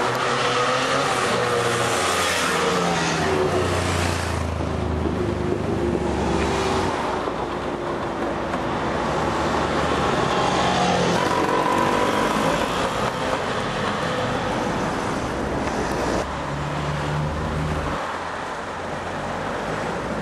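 Classic motor scooters (Lambrettas and Vespas) riding past one after another, their engines revving with the pitch sliding up and down as each goes by. It gets a little quieter about sixteen seconds in as the last of them pass.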